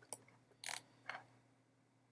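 A computer mouse clicking three times in quick succession, the middle click the loudest, as its button is pressed and released to drag an image smaller.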